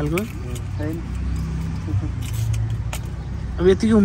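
A steady low engine hum runs under the pause, with a brief clink about two seconds in.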